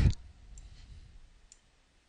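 One faint click of a computer mouse button about one and a half seconds in, over quiet room tone, after the last syllable of a spoken word at the very start.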